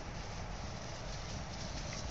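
A flock of sheep running past close by, their hooves falling on grass in a steady low patter.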